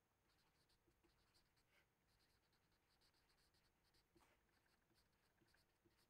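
Near silence, with very faint strokes of a felt-tip marker writing on paper.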